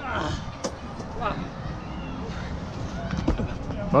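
Short shouts and voices with a steady low wind rumble on the microphone, and a single thump a little over three seconds in.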